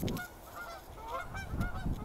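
A flock of geese honking as they fly overhead, many short calls overlapping one another.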